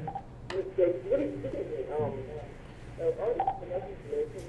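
A caller's voice coming in over a telephone line, muffled and hard to make out, in two short stretches, over a steady low hum on the line.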